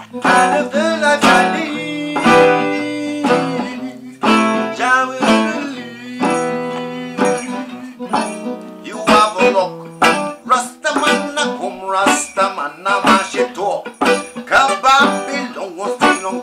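A Selmer-style acoustic guitar strums and picks chords in a roots-reggae groove, with hand-drum strokes joining in more densely in the second half.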